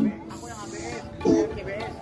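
Background voices talking, with music faintly underneath.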